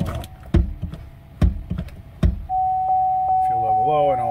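A steady, single-pitched electronic warning tone from a GMC Sierra's instrument cluster, starting about two and a half seconds in, preceded by three sharp clicks about a second apart.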